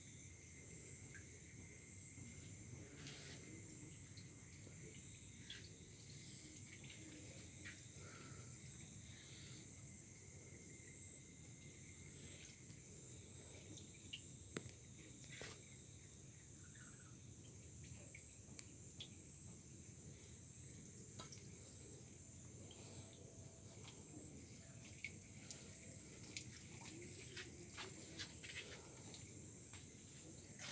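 Faint steady chirring of night insects, with scattered small drips and splashes at the water surface of an aerated biofloc fish tank.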